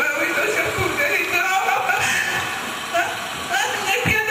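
A woman speaking through a microphone in a tearful voice, giving farewell words to the dead.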